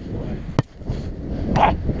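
A beach volleyball struck once by a player, a single sharp slap about half a second in.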